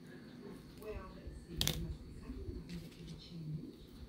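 A boy eating pizza and humming "mm" several times in short low hums, with a sharp click about a second and a half in.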